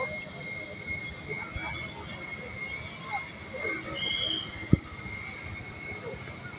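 Small multirotor surveillance drone's propellers whining at a steady high pitch, with faint voices underneath and one sharp click a little before the end.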